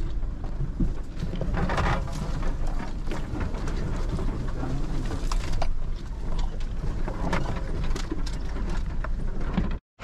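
Inside the cab of a Toyota Hilux driving slowly over a rough, overgrown bush track: a steady low engine rumble under constant rattling, clicking and knocking from the body and interior, with scrub brushing against the vehicle. The sound cuts off abruptly near the end.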